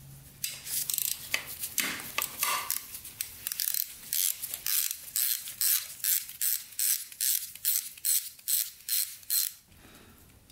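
Hand socket ratchet clicking as it backs out a 10 mm bolt, in a regular run of about three strokes a second that stops just before the end.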